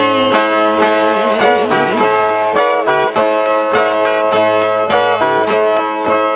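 Brazilian violas (steel-strung, double-course guitars) playing a plucked instrumental passage between sung verses of repente, with quick repeated picked notes over a held low note.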